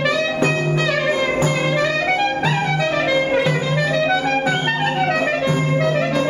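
Clarinet playing an ornamented Greek folk melody full of slides and turns, over a steady low beat: an instrumental passage between the sung verses.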